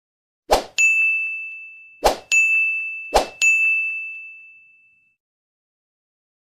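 Three end-screen button sound effects, about one and a half seconds apart. Each is a short sharp hit followed at once by a bright bell-like ding that rings out and fades over a second or two. The last ding dies away about five seconds in.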